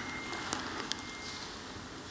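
Faint room tone with two small, faint clicks in the first second.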